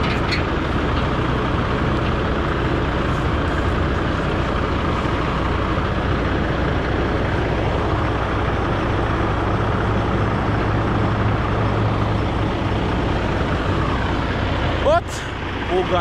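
Heavy diesel machinery running steadily: a telehandler driving across a gravel yard as it unloads a truck. A brief sharp noise comes about a second before the end.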